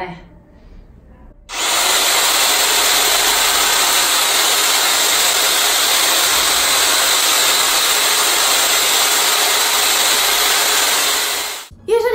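A handheld electric motor tool running steadily at full speed. It starts abruptly about a second and a half in and cuts off suddenly just before the end.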